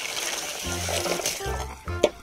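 Water poured and splashing over the plastic bed of a toy dump truck as it is rinsed, with background music underneath; the splashing dies away near the end.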